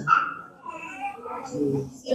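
A faint, high-pitched voice speaking or calling in short broken phrases, away from the microphone.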